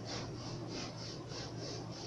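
Knife sawing back and forth through a thick foam mattress, a short rasping stroke about three times a second.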